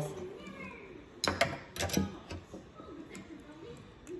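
A few sharp metal clicks and taps as a nut driver loosens the 10 mm bolt holding a small-engine carburetor's float bowl, bunched together a little over a second in.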